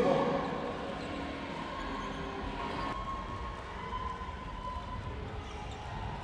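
Basketball being dribbled on a hardwood gym court during play, low uneven thuds under the hall's faint background noise.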